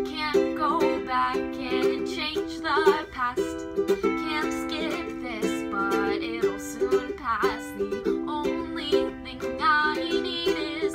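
A woman singing with vibrato over a strummed ukulele.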